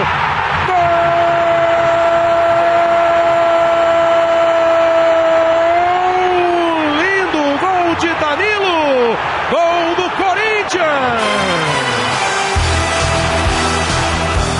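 A Brazilian football commentator's drawn-out goal cry, held on one note for about five seconds, then breaking into shorter rising and falling shouts. Music with a steady beat comes in near the end.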